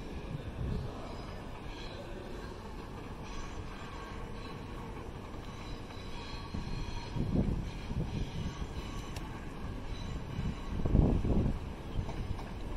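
Southern Class 455 electric multiple unit running across pointwork, a steady rumble of wheels on rails with faint high squeals from the wheels on the curves. Louder low rumbles come about seven and eleven seconds in.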